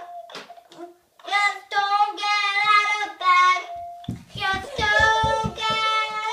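A young girl singing a made-up song in held notes that step up and down between phrases. A run of low thuds sounds under her voice about four seconds in.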